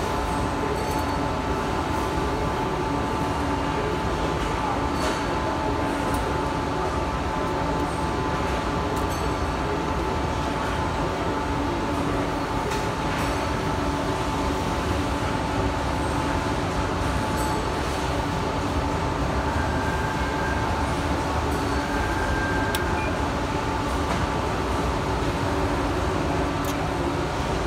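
Amada HG1003 ATC press brake running: a steady mechanical hum holding a few even tones, with occasional faint clicks.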